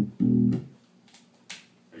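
1960s Japanese SG-style bass guitar on its neck pickup, played through a small bass combo amp: two short notes plucked one after the other, then a single click about one and a half seconds in.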